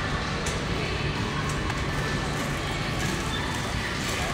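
Steady supermarket background hum, with faint distant sound beneath it.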